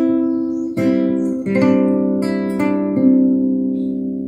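Nylon-string classical guitar plucked in a slow arpeggiated passage: about five notes and chords, each left ringing over the last, dying away near the end.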